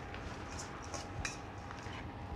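Quiet room tone with a faint steady hum and a single light click about a second in.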